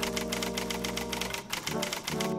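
Typewriter-style typing sound effect: a rapid, even run of key clacks, about ten a second, as an on-screen caption is typed out. It plays over a sustained music chord.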